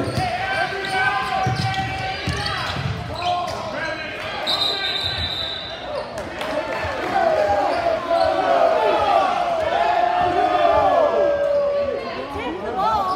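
Basketball game in a gym: a ball dribbling on the hardwood and many shouting voices from players and crowd, echoing in the hall. A short, high referee's whistle blast sounds about four and a half seconds in, and the shouting grows louder in the second half.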